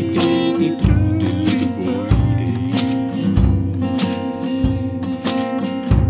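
Acoustic guitar strumming chords in an instrumental passage of a live song, over a steady low beat about every second and a quarter.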